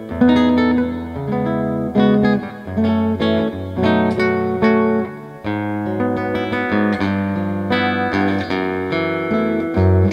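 Godin Multiac Nylon SA nylon-string electro-acoustic guitar played fingerstyle: a melody of plucked single notes, about two a second, over held bass notes.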